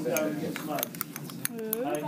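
Metal spatula clinking against a small glass beaker several times as it works in the powder.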